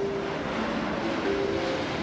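Jet engines of a low-flying Boeing 747 freighter on landing approach, a steady roar.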